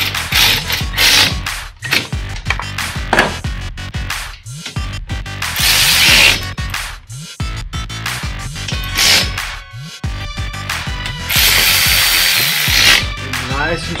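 Cordless power tools running in several short bursts, among them a compact cut-off wheel and a cordless ratchet driving a bolt; the longest burst, near the end, carries a steady high whine. Background music plays underneath.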